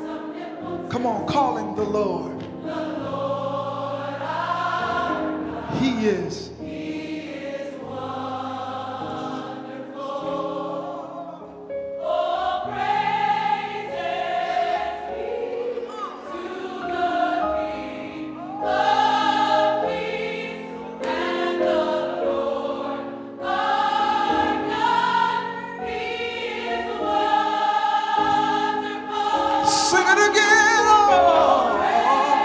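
Large gospel choir singing a slow worship song in held, harmonised chords, the phrases swelling and breaking off every few seconds.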